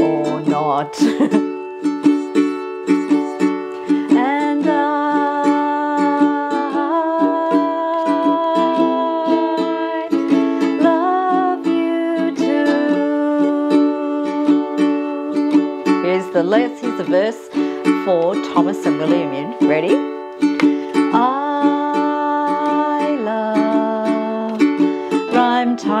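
Ukulele strummed in steady chords, with a woman's voice singing a gliding melody over it in several stretches.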